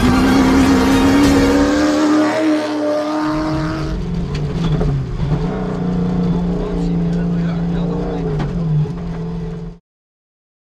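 Ford Ranger rally-raid car's engine revving hard, its pitch climbing over the first three seconds as it drives on a dirt track. About four seconds in, the sound changes to the engine heard from inside the cabin, running at a steadier, wavering pitch, until it cuts off suddenly just before the end.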